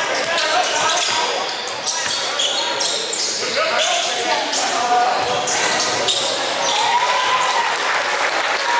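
A basketball being dribbled on a wooden gym floor during play, with players' voices calling out, all echoing in a large hall.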